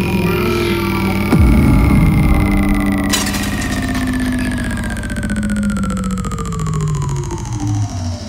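Electronic trap remix at its ending: a long falling synth sweep that drops steadily in pitch, over a heavy bass hit about a second and a half in.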